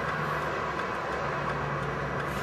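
Steady rumble of freeway traffic going by, with a faint low hum, heard from inside a car stopped on the shoulder.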